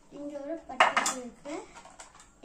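Hard pencil box clattering as it is handled and pulled out of its packaging, with a loud cluster of sharp knocks just under a second in.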